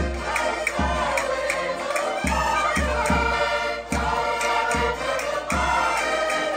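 Live Portuguese folk music: diatonic button accordions and a cavaquinho playing while several voices sing together, with a drum beating deep thumps about twice a second and sharp percussive clicks on the beat.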